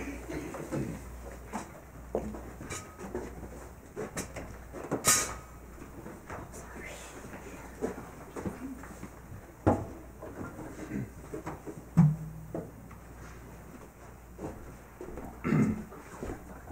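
Scattered knocks and clicks of people moving about and handling instruments and equipment, with faint murmuring voices; the sharpest knocks come about five, ten and twelve seconds in.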